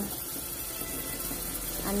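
Sliced onions sautéing in oil in a pot on the stove, a steady sizzle.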